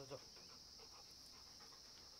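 Faint, steady high-pitched chirring of crickets, with a brief vocal sound right at the start.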